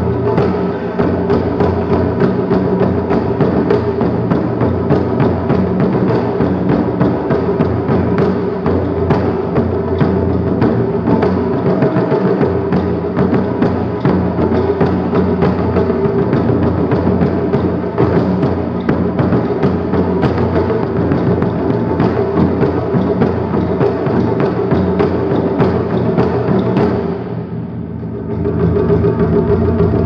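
Ensemble of Japanese taiko drums played fast and continuously, many strokes a second. Near the end the drumming briefly drops in loudness, then comes back at full strength.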